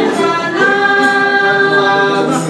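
A small family group of mixed voices, men, women and children, singing a hymn together without accompaniment, holding a long note from about half a second in.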